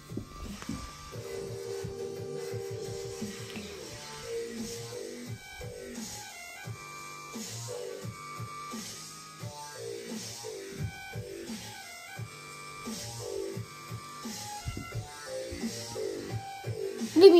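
Electronic synthesizer music: a held chord about a second in, then a melody of short notes over a steady beat.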